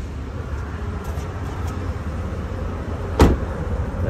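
A pickup truck door, on a 2019 Ram 1500, shut once with a single sharp thud about three seconds in, over a steady low rumble of the phone being handled and carried.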